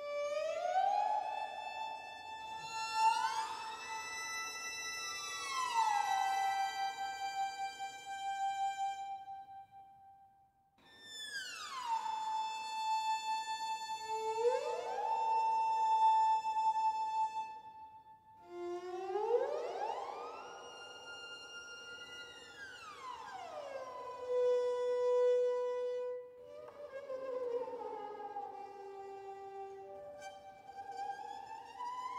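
Sampled first-chair solo violin playing slow, delicate glissandi. It slides up and down between held notes, in intervals of a fifth and an octave, and some slides overlap. Near the end it plays a wavering slide, a glissando with trills.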